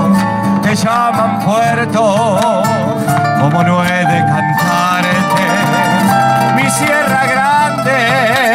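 Live Argentine folk band playing an instrumental passage of a huella: two acoustic guitars strumming, keyboard and box-drum percussion, with a wavering vibrato melody over the guitars.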